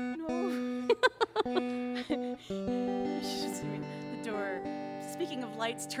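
Acoustic guitar plucked several times on one low note, then a chord strummed and left ringing about halfway through, as when checking the tuning between songs.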